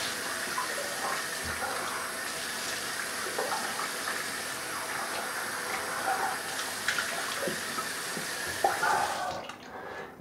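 Bathroom sink tap running while a face is rinsed with water at the sink after shaving. The water shuts off about nine seconds in.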